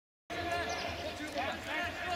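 Silent for a moment, then players' voices calling and shouting on a football pitch, over a steady low hum.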